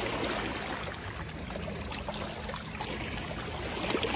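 Small lake waves lapping and splashing against shoreline rocks, with louder washes at the start and near the end.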